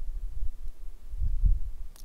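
Low, irregular rumble on the microphone with a few dull thumps, the strongest about one and a half seconds in.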